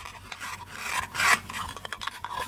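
Hook-and-loop pads on the cut faces of a plastic toy bell pepper rasping as the two halves are pressed and rubbed together. The rasp swells to its loudest a little past the middle.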